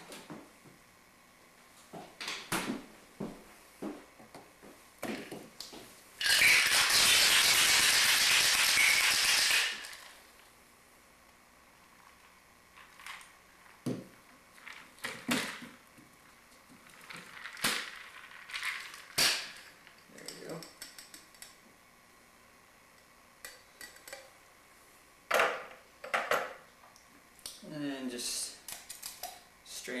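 Ice rattling hard in a Boston shaker (a metal tin over a mixing glass) as a cocktail is shaken, one loud burst of about three and a half seconds a few seconds in. Before and after it come scattered knocks and clinks of the shaker tin, glass and strainer.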